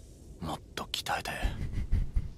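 A man's stifled laughter into his hand: short breathy puffs and snickers starting about half a second in, with a couple of dull low bumps near the end.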